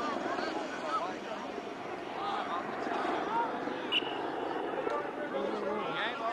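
A small helicopter flying overhead, its rotor and engine running as a steady sound, with people's voices talking over it throughout.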